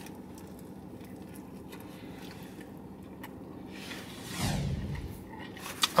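Faint chewing of a mouthful of cheesesteak over a steady low hum in a car cabin, with a louder, brief noise about four and a half seconds in.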